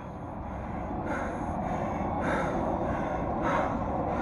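A man breathing hard and out of breath after a set of burpees, three heavy breaths about a second apart, over a steady low rumble.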